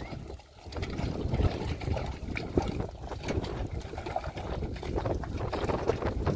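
Wind buffeting the microphone, a rough, uneven low rumble.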